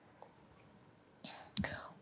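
A pause in speech: faint room tone for about a second, then a soft breath drawn into the lectern microphone, ending in a short mouth click just before the voice resumes.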